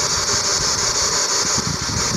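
Steady hiss with an uneven low rumble underneath that swells near the end; no other distinct event.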